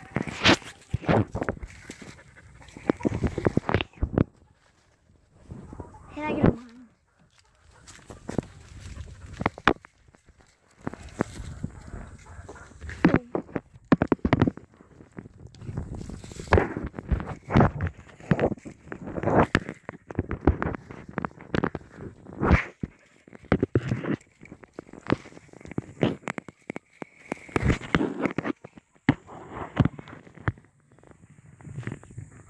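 Handling noise from a phone whose camera is covered by a hand: irregular rubbing, knocks and bumps, with a short burst of a child's voice about six seconds in.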